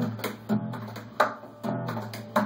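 Acoustic guitar strummed, a few chords struck in a loose rhythm, each ringing on and fading before the next.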